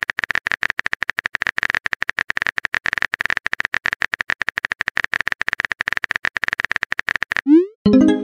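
Rapid, continuous typing sound effect of dense keyboard-like clicks. It stops near the end and gives way to a short rising blip, a message-sent sound.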